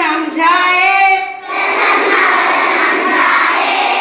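A large group of schoolchildren chanting slokas in unison, with a brief break about a second and a half in.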